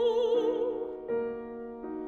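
Operatic soprano holding a sung note with wide vibrato over piano chords; the voice stops about a second in while the piano keeps playing repeated chords.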